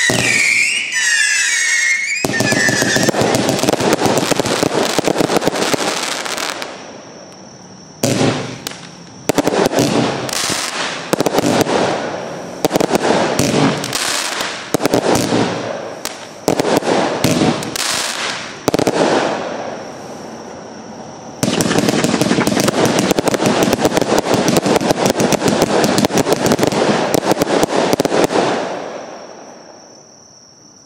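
Lesli 'Fallas With A Bite' compound firework cake (CAT F2, about 1.1 kg of powder) firing its shots. Gliding whistles come at the very start, then dense crackling. A run of shorter salvos follows, each dying away, and then a long dense crackling barrage that fades out near the end.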